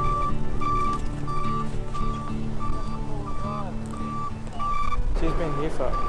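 A utility truck's reversing beeper sounds an even high beep about every two-thirds of a second over the truck's engine. It stops about five seconds in, when a voice begins.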